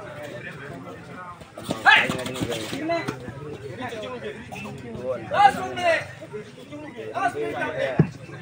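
Men's voices shouting and chattering around a kabaddi court, with two louder shouted calls at about two seconds and five and a half seconds.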